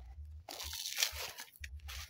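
A crunching rustle lasting about a second, starting about half a second in, over a low rumble.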